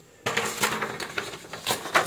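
Handling noise: a sheet of paper rustling with small knocks and clicks, starting about a quarter second in.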